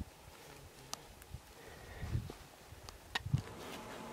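Faint scattered clicks and soft knocks from a climber's gear and handheld camera while he is hauled up on a rope, with a sharp click about a second in and a cluster of clicks and knocks around three seconds in.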